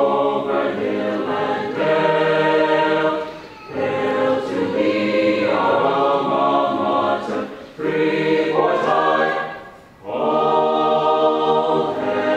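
High-school varsity choir singing a school alma mater in sustained, held chords. It goes in phrases, with brief pauses between them about three and a half, eight and ten seconds in.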